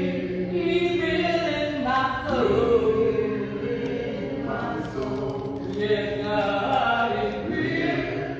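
A small group of voices singing a slow hymn unaccompanied, holding long notes that slide from one pitch to the next.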